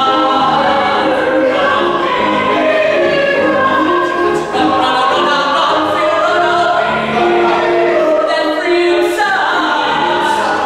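Live musical-theatre song in a gospel style: a male soloist and a small ensemble singing together, accompanied by grand piano.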